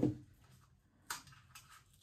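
Small Dixie paper cup being worked as its cut bottom is popped out: a brief crackle of paper about a second in, with light handling noise around it.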